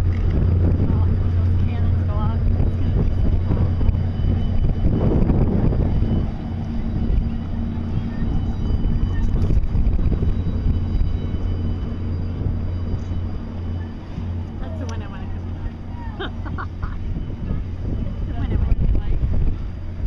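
Steady low engine drone from a schooner motoring past close by with its sails furled, with scattered voices of onlookers and some wind on the microphone.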